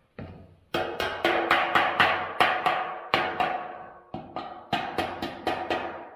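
Repeated hammer strikes on a 26-gauge galvanized sheet-steel predator guard, about four blows a second with a brief pause, each blow leaving the thin metal ringing.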